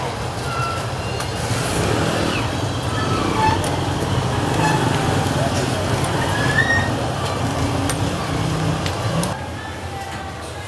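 People's voices over a steady low rumble of outdoor background noise, which drops away abruptly near the end.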